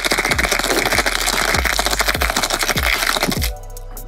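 Ice rattling fast inside a cocktail shaker as a cocktail is shaken hard with ice. The shaking stops about half a second before the end.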